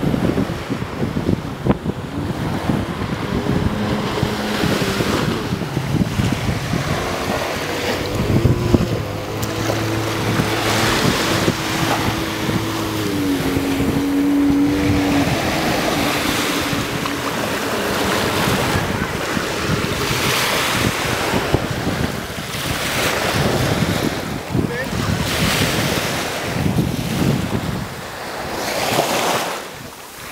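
Jet ski engine running over the sea, its steady tone stepping up and down in pitch and fading out about halfway through, over breaking surf and wind on the microphone.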